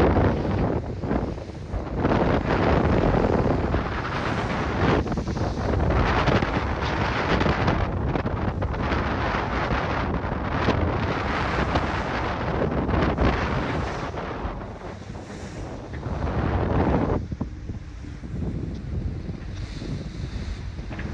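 Wind buffeting the microphone over the rush of water along the hull of an IMOCA 60 racing yacht sailing fast through the sea. The noise eases somewhat in the last few seconds.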